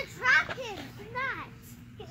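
A child's high-pitched voice: a few short vocal sounds without clear words, the pitch bending up and down.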